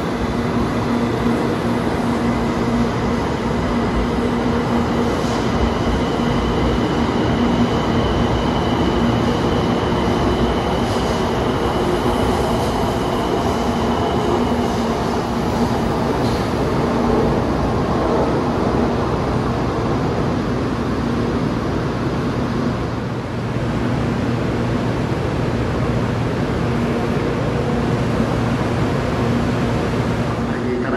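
700 series Hikari Rail Star shinkansen rolling past the platform at low speed: a steady rumble of the cars with a low hum. A thin high whine sounds from about six to fifteen seconds in.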